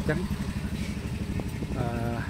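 Street sound picked up by a Xiaomi 11T Pro's microphone: a vehicle engine idling with a steady, even low throb.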